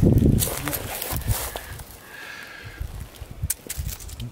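Footsteps and rustling on a forest floor of dry pine needles and twigs: irregular crunches and knocks, loudest in the first second and a half, then sparser and quieter.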